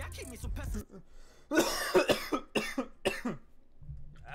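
A person coughing several times in quick succession, the first cough the longest and loudest. Rap music cuts off just before.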